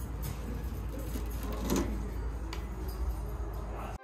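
A steady low rumble with a few faint clicks and knocks scattered through it.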